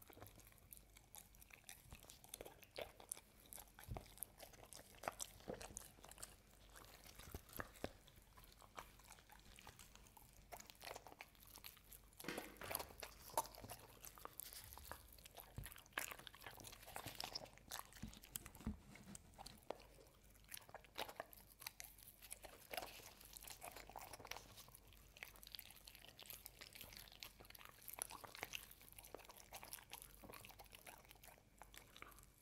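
A dog biting and chewing a homemade carob cookie sandwich: faint, irregular crunches and wet chewing clicks, thickest around the middle.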